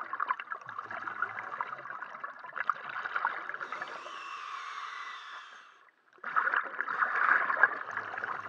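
Scuba regulator breathing underwater: exhaled air bubbles rushing and crackling past the microphone, with a quieter, hissier stretch in the middle and a brief silence just before six seconds, after which the bubbling starts again louder.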